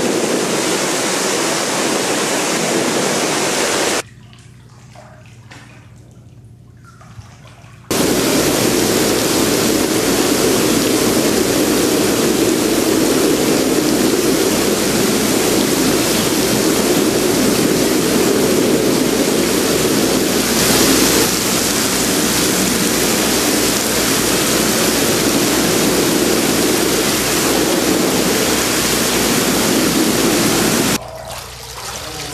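Steady, loud rush of water churned by whirlpool jets. Drops to a much fainter hiss for about four seconds, starting about four seconds in, then returns as before.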